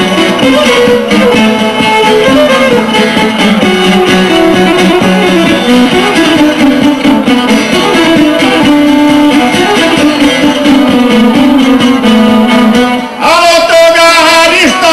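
Traditional Bosnian folk music (izvorna) played on a long-necked plucked lute and a violin in an instrumental passage. Near the end, after a brief dip, a man's voice starts singing.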